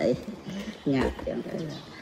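A man's voice speaking Khmer in a quieter stretch between louder phrases, one short syllable falling in pitch about a second in, then a low murmur.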